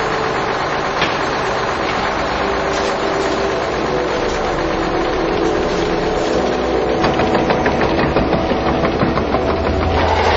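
An engine running steadily at an even pitch, with a quick run of knocks in the last few seconds.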